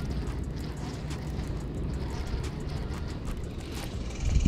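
Baitcasting reel being cranked on a lure retrieve: a steady low whir with faint fine ticking.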